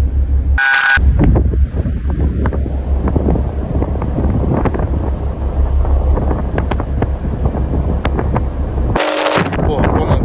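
Wind buffeting the phone's microphone on an open ship's deck, a steady heavy low rumble. About half a second in, a brief sound with a few steady tones cuts in, and another comes just before the end.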